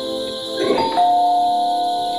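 Two-note doorbell chime, a higher ding followed by a lower dong that keeps ringing, with a short rattle just before it, over soft background music.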